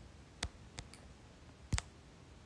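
A few quiet, sharp clicks over faint room tone: one about half a second in, a fainter one just after, and a louder quick double click near the end.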